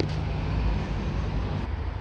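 Steady outdoor background of road traffic with a low engine hum, fading slightly near the end.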